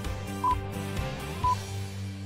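BBC Greenwich Time Signal pips: two short, high electronic beeps one second apart, one about half a second in and one about a second later, over sustained music. They count down to the top of the hour on a BBC World Service broadcast.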